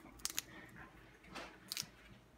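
Faint crisp snaps and crackles of fleshy roselle hibiscus calyx petals being pulled off the seed pod by hand, in a few short clicks about a quarter second in and again near the end.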